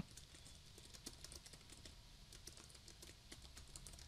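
Faint, quick typing on a computer keyboard: a steady run of light keystrokes as a line of text is typed.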